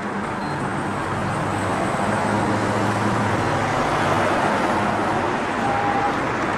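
Steady road traffic noise with a low engine hum that swells slightly in the middle.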